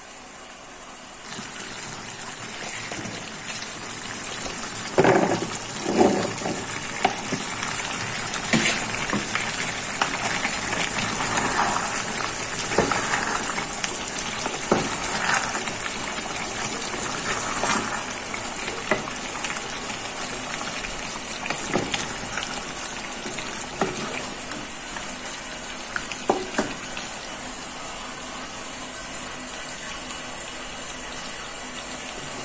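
Chicken stew boiling in a pan with a steady bubbling hiss that starts about a second in. A wooden spatula knocks and scrapes against the pan several times as the stew is stirred.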